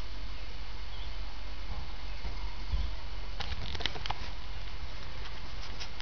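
Small fire of dead twigs and biomass crackling in a biochar stove, with a quick run of sharp pops about three and a half seconds in and a few more near the end, over a steady low rumble.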